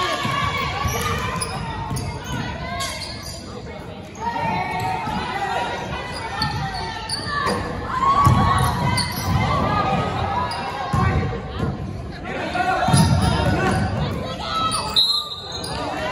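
A basketball bouncing on a hardwood gym floor in a large, echoing gym, with players' and spectators' voices around it.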